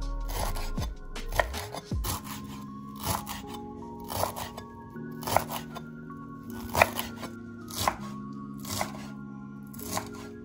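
Chef's knife chopping fresh dill on a wooden cutting board: a sharp knock of the blade on the board about once a second, over background music.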